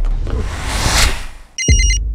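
A swelling whoosh that rises to a peak about a second in and fades away, then after a brief near-silence a telephone starts ringing with a fast electronic trill near the end.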